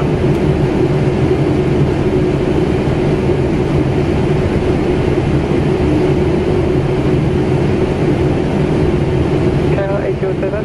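Steady flight-deck noise of a Boeing 777-300ER in descent: an even rush of airflow and air conditioning over a low, steady hum that does not change.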